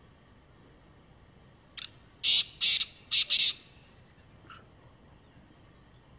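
Black francolin (kala teetar) giving one call about two seconds in: a short lead note, then four loud notes in two quick pairs, lasting under two seconds. A faint single note follows about a second later.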